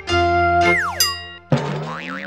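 Cartoon-style logo jingle: a held synth chord, a quick falling whistle-like glide a little past half a second in, then a sudden springy boing about one and a half seconds in.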